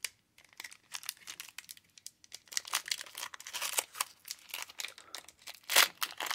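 Foil trading-card pack wrapper being torn open and crinkled by hand: a run of crackles that starts sparse, grows denser about halfway through and ends in one louder crackle near the end.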